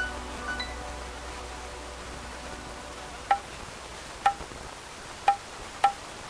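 The tail of a sustained melodic phrase dies away at the start, then after a few seconds of low background noise a struck metal percussion instrument rings out single notes, four strikes about a second apart with the last two closer together.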